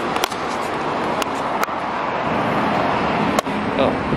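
Steady city street noise with passing traffic, broken by four sharp clicks spread through it.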